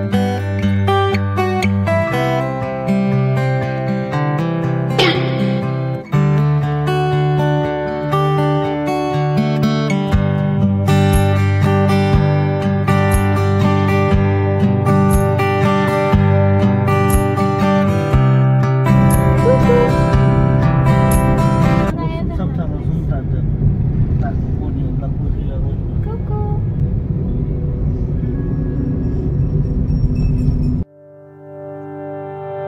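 Background music with plucked guitar-like notes. About three-quarters of the way through, the music stops and leaves the steady rumble of road noise inside a moving car.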